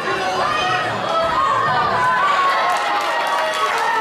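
Crowd of spectators chattering and shouting, many voices overlapping at a steady level.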